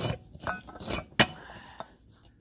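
Metal clinks and knocks from an old water pump as its pulley hub is rocked and turned by hand: a handful of short sharp clicks, the loudest a little past the middle. The hub wobbles on worn-out bearings, the failure that made the pump leak.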